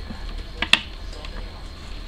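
A small plastic hot glue gun being handled, with one sharp click about three quarters of a second in and a fainter tick just before it, over a low steady hum.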